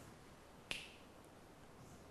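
A single sharp click about a second in, over faint room tone.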